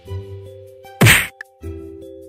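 Background music with sustained notes. About a second in comes one sharp, loud whack-like transition sound effect.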